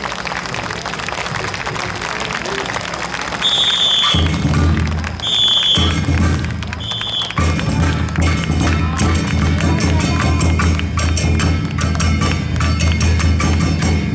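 Three short, high whistle blasts a little over three seconds in, at about five seconds and at about six and a half seconds: the dragon-pearl handler's whistle cueing the dragon dance team. Loud drum and percussion accompaniment starts about four seconds in and settles into a steady beat, with crowd murmur before it.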